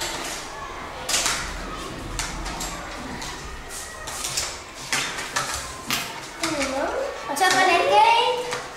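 Children's voices in a classroom, mixed with scattered knocks and clatter of toy kitchen utensils handled on a table; a child's voice rises near the end.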